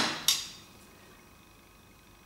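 Two quick metal clinks, the second about a third of a second after the first: homemade steel hooking pliers knocking against the hand coiler's chuck and mandrel as they are brought into place.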